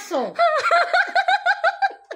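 A woman laughing: a quick falling note, then a run of rapid, even laugh pulses at about six or seven a second.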